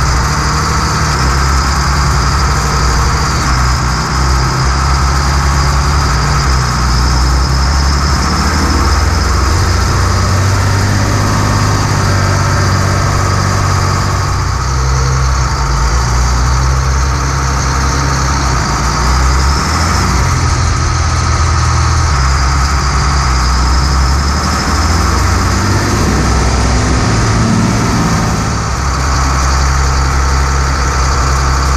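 Allis-Chalmers 8030 tractor's diesel engine running steadily while driving, loud and close, heard from beside its upright exhaust stack on the hood.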